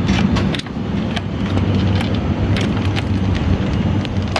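Shopping cart rolling over a tiled floor: a steady low rumble from the wheels, with the wire basket rattling and irregular clicks as the wheels cross the tile joints.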